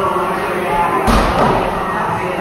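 A single heavy thud from a wall-ball medicine ball about a second in, over a steady background of voices in a large room.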